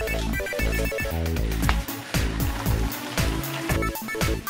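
Background music with a steady beat, about two low beats a second, and short repeating high notes.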